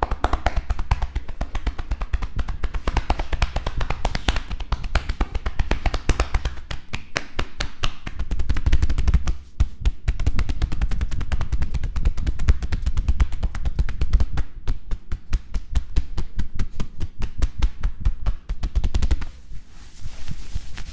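Hands rapidly striking a person's back through a cotton shirt in percussive massage (tapotement): a fast, even patter of chops and slaps with a dull thud under them, broken by a few short pauses.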